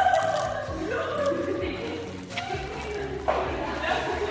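Other people's voices in the room, quieter than the close talk around them.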